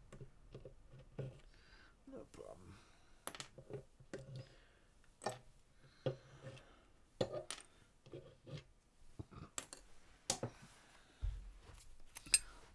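Faint, irregular clicks and taps of a small hand tool on a guitar bridge as the pins are worked out of the freshly glued, clamped bridge before the glue sets.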